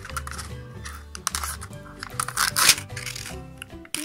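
Thin plastic wrapping crinkling and tearing as it is peeled off a surprise-egg capsule, in short rustling bursts that are loudest about two and a half seconds in. Children's background music with a bass line plays under it.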